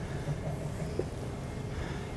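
Quiet room tone of a lecture room: a steady low background hum, with one faint short click about a second in.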